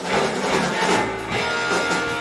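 Live rock band playing, electric guitars over drums with a steady beat.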